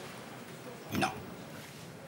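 Speech only: a man says a single short "Non" about a second in, over quiet room tone.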